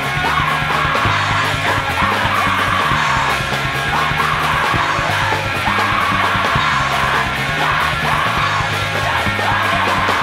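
Loud punk rock song: a full band with drums and guitar playing under a screamed vocal.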